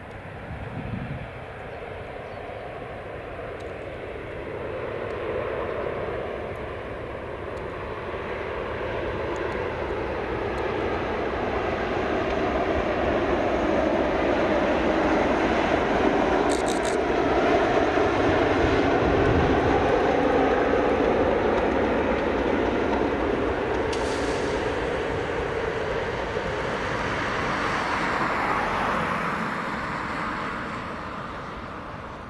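Class 37 diesel locomotive's English Electric V12 engine working as it runs past with a saloon coach, heard from a distance. The engine sound builds gradually, is loudest about halfway through and then slowly fades.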